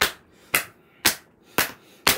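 Two paperback picture books smacked together four times, about two sharp slaps a second, evenly spaced, in a mock fight between the books.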